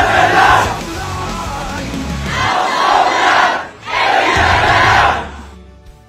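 A large group of men's voices chanting in unison over backing music with a deep bass line, in about three loud phrases, fading out near the end.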